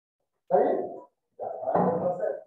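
A man's voice: two short, loud bursts of speech, the second running on past the end.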